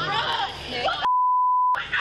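A censor bleep: one steady, pure, high beep lasting under a second, a little past halfway, with all other sound cut out while it plays. It blanks out a word in the surrounding speech.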